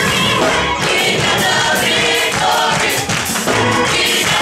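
Gospel choir singing with musical accompaniment.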